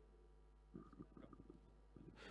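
Near silence, with a few very faint, scattered ticks in the second half.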